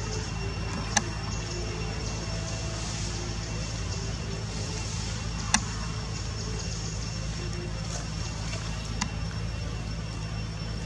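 A steady low mechanical hum, like a motor running, with a faint steady high whine above it. Three sharp clicks stand out: about a second in, midway, and near the end.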